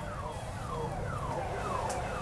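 Electronic alarm siren sounding a quick series of falling whoops, about two a second.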